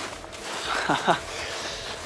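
A short vocal sound with a sharply falling pitch about a second in, over a steady background hiss.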